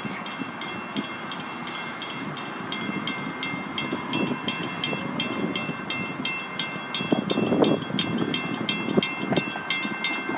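Grade-crossing warning bell ringing in rapid, even strokes while the crossing gates rise, over a low rumble that grows louder in the second half.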